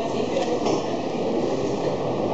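Steady, fairly loud rumbling background noise with no distinct events, apart from two faint clicks about half a second in.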